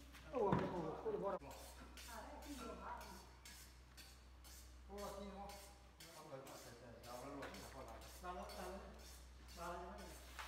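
Indistinct voices of people talking in the background of a large room, loudest about half a second in, over a steady low hum.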